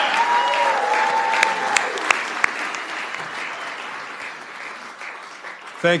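Audience applauding, the clapping slowly dying away over several seconds, with a few single claps standing out about two seconds in. A voice calls out briefly over the applause at the start.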